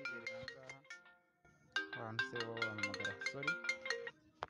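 Mobile phone ringtone: a short chiming melody played twice with a brief pause between, the second time cutting off suddenly near the end.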